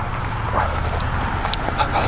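Handheld camera jostled while running through long grass: a steady low rumble of wind and handling noise, with footfalls and short rustles.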